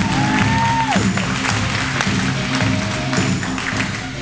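Music playing over a crowd's applause.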